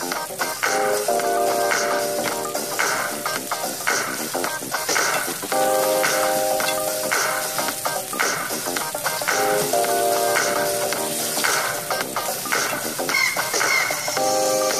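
Flour-dredged pork chops frying in hot oil in a skillet: a steady sizzle with crackles throughout. Background music with sustained notes plays over it.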